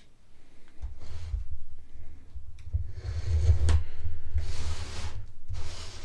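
Cardboard shipping box being handled and opened on a wooden bench: rustling, rubbing and scraping of cardboard and packing tape over a low rumble, with a couple of sharp clicks and a long hissy scrape in the second half.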